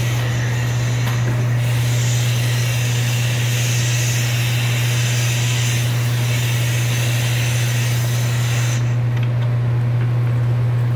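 A loud, steady low hum that does not change, with a hiss that comes in about a second and a half in and stops near the end.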